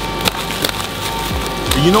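Plastic stretch wrap crackling and rustling as it is slit and torn away, with a few sharp snaps.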